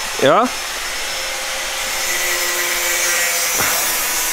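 A steady rushing hiss, like a fan or blower running, with a faint steady hum in the middle and a brief soft sweep near the end; one short questioning word, 'jo?', is spoken at the start.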